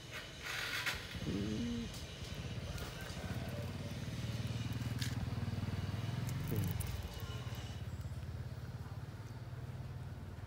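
A vehicle engine running steadily, building up from about three seconds in and holding to the end.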